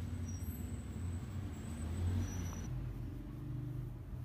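Low, steady rumble of motor traffic, with a faint thin high whine over the first part.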